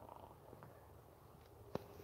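Near silence: a faint low rumble, with a single sharp click near the end.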